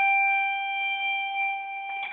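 Epiphone Sheraton II electric guitar letting a single held note ring on and slowly fade, with a short pick or string click near the end.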